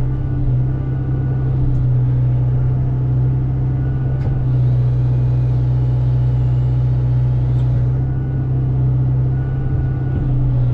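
Hyundai mini excavator's diesel engine running steadily, heard from the operator's seat, while the grapple saw's hydraulics grab and lift a log. There are a couple of faint clicks partway through.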